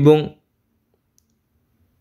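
A short syllable of a man's narrating voice, then silence with one faint click just after a second in.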